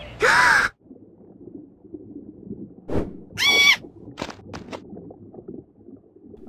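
Cartoon sound effects: a loud, short, breathy gasp-like sound just after the start, then a knock about three seconds in, followed at once by a short high squeaky tone and a few light clicks.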